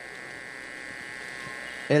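Steady electrical buzz, a constant even-pitched drone with many overtones, from the microphone and sound system. A spoken word comes in at the very end.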